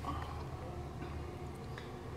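Low, steady background hum with a faint haze of noise and no distinct event.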